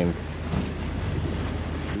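Sailing yacht's engine running steadily at cruising revs while motor-sailing: a low, even hum with a fast fine pulse. Wind and water hiss lie over it.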